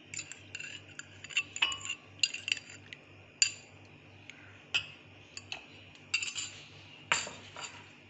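Metal fork clinking and scraping against a glass bowl and glass goblets while cubes of set jelly are lifted out and dropped in. The clinks are sharp and irregular, a dozen or so, some ringing briefly.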